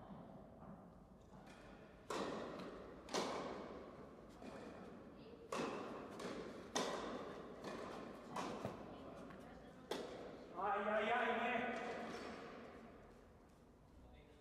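Tennis ball struck back and forth by rackets in an indoor hall, about six echoing hits a second or so apart. Near the end a player's voice calls out for a couple of seconds.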